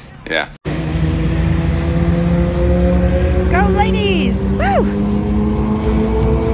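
Car engines idling steadily at a drag strip starting line, a low, even running sound, with a voice calling out twice about four seconds in.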